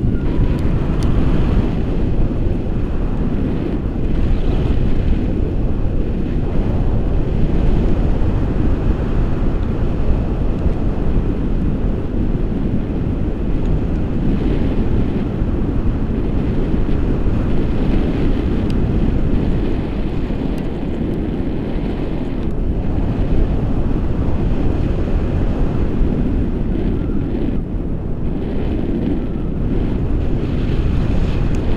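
Wind from a tandem paraglider's flight rushing over the microphone of a pole-mounted action camera: a steady, loud low rumble of wind noise.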